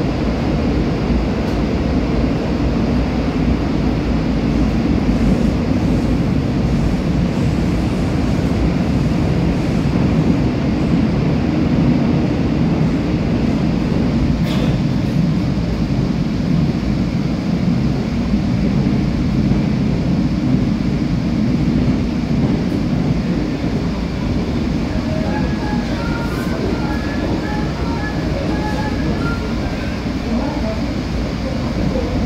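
Interior of a Korail Line 3 subway car, a new Woojin-built IGBT-inverter electric train, running at speed: a steady, loud rumble of wheels on rail and running gear.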